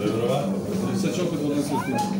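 Overlapping voices of children and spectators, chattering and calling out during a youth football game, with a high voice rising in pitch near the end.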